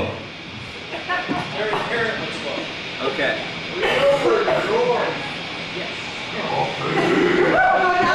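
Voices talking and calling out in a bar room between songs, with little or no music under them.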